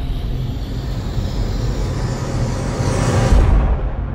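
Logo-intro music: a low sustained drone under a rushing whoosh effect that swells to its loudest near the end, then drops away.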